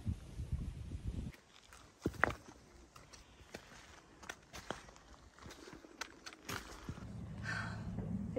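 Footsteps climbing a stony path: scattered, irregular crunches and taps on loose rock, after a low rumble in the first second or so.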